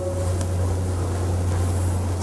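Steady low hum with a faint even hiss above it, with no distinct events: the background noise of the room and its sound system in a gap between spoken words.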